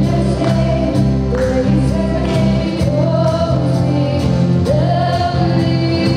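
Live worship band playing a gospel song: a woman singing the melody into a microphone over keyboard and electric and acoustic guitars, with a steady beat.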